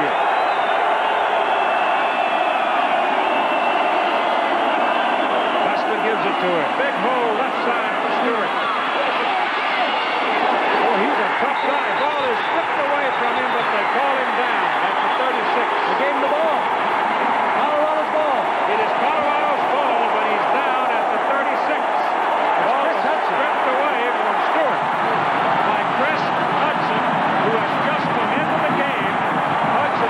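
Large stadium crowd cheering and shouting, a steady dense wall of many voices with no single voice standing out.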